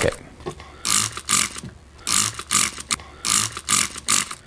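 Liquid cleaner sprayed in short hissing bursts, about two a second, onto a motorcycle's rear brake caliper bracket to wash off grime.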